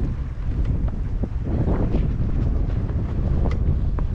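Wind buffeting the microphone: a steady, heavy low rumble with no voice over it.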